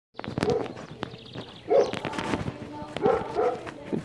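A dog barking a few times in short separate barks.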